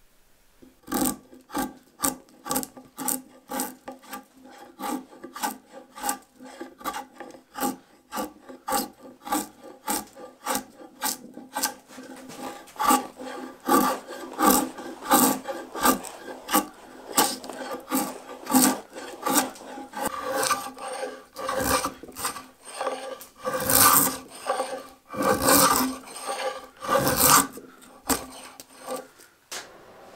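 Draw knife pulled repeatedly through black locust, stripping the bark and shaving one side of the log flat. At first it scrapes in quick strokes about two a second, then the strokes grow louder and heavier in the second half.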